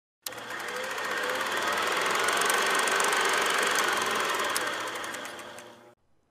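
A small machine clattering rapidly and steadily; it starts suddenly, grows louder toward the middle and fades out near the end.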